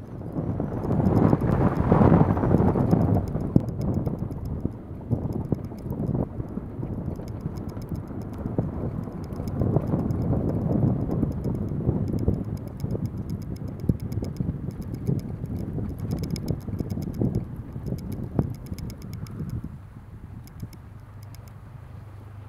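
An electric Tesla Model 3 Performance driving on a snow-packed track: tyre and snow noise with wind buffeting the roof-mounted microphone, full of irregular knocks and clicks. It is loudest about a second in and again about ten seconds in, and dies down near the end.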